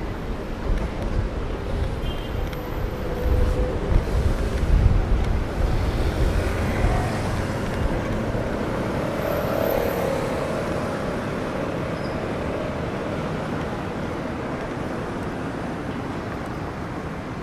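Road traffic at a city junction: engines and tyres of passing cars and buses, with a heavy low rumble that rises and falls over the first several seconds, then settles into a steadier hum.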